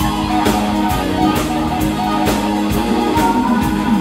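Live blues-rock band playing an instrumental passage: electric guitar through Marshall amps over bass, keyboard and a steady drum beat about twice a second, with bent guitar notes near the end.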